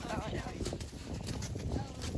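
Horse's hooves clip-clopping at a walk on the arena's dirt footing.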